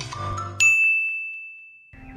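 A single high, bell-like ding struck about half a second in, ringing on one tone and fading slowly, after the tail of background music.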